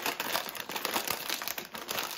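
A family-size Lay's snack bag crinkling and crackling in a quick, uneven run of small snaps as hands pull its sealed top open.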